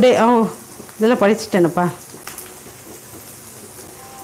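Onion, garlic and chillies frying in oil in a kadai: a steady, soft sizzle, heard on its own after a voice stops about two seconds in.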